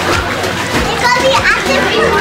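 A toddler's voice vocalizing and babbling, with a short rising call about halfway through.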